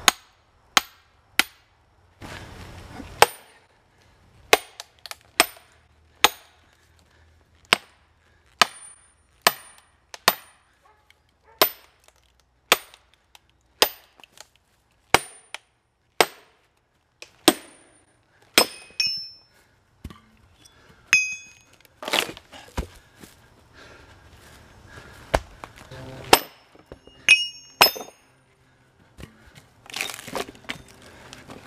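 Steel splitting wedges driven into a stump with a hammer to split it: sharp metallic blows, roughly one a second with a few short pauses, each with a brief ring.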